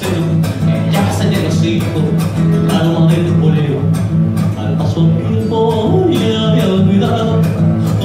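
Live band playing an instrumental passage of a traditional Colombian folk rhythm, with plucked strings over a steady percussion beat.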